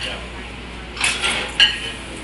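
Cutlery clinking against plates and dishes, with two sharp, ringing clatters in the second half, over background chatter.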